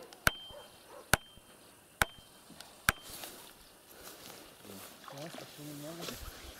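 Hammer blows driving a wooden stake into a pond bottom: four strikes a little under a second apart, each with a short ring.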